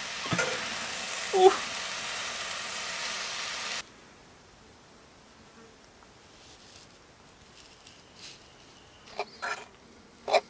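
Chopped vegetables sizzling in a hot frying pan as they are stirred, a steady frying hiss that cuts off suddenly about four seconds in. After it, only quiet background with a couple of short clicks near the end.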